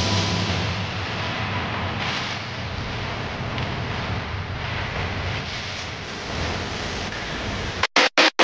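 A steady rushing noise with no distinct strikes. The low notes of music fade out under it in the first couple of seconds.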